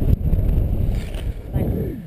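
Wind buffeting a body-worn camera's microphone as a bungee jumper swings upside down on the cord, a loud steady low rumble. A short spoken "vale" comes near the end.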